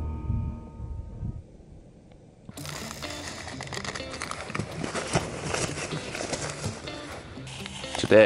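Background music fading out over the first second and a half; then, from about two and a half seconds in, the crinkle and rustle of a paper oatmeal packet being torn and poured into a Jetboil cooking pot, over a steady hiss.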